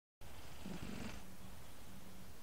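Sleeping tabby cat purring and snoring, heard close up through a microphone resting on its chest: a steady low rumble that swells into a louder, breathier stretch just under a second in.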